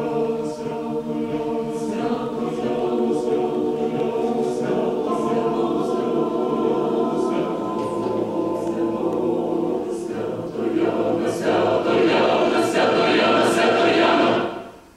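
Mixed a cappella choir singing an arrangement of a Ukrainian folk song: held chords under a rhythmically repeated syllable whose hissing 's' recurs about every two-thirds of a second. The choir swells louder for the last three seconds or so into the final chord.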